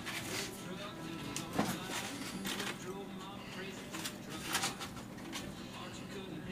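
Aluminium foil crinkling in several short bursts as cooked ribs are handled in it, over a low murmur of indistinct voices and room hum.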